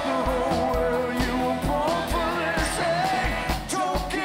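Live band playing a country-rock song: a singing voice over strummed acoustic guitars and a steady kick-drum beat.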